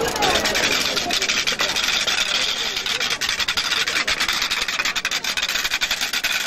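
Wooden wheeled rattles pushed along a paved street, making a continuous rapid rasping clatter, with crowd voices underneath.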